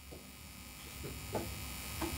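Steady low electrical hum and buzz from a live microphone and sound system, with two faint short sounds, one near the start and one just over a second later.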